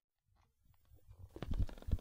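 Near silence at first, then from about halfway in a few soft low thumps over a faint low rumble, growing louder toward the end.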